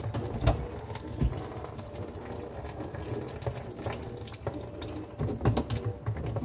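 Water running down a kitchen sink drain through the plastic drainpipes, with irregular drips falling onto a plastic tray beneath the pipes.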